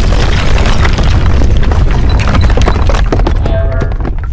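Explosion sound effect: a loud, long rumbling blast that dies away near the end, with music under it.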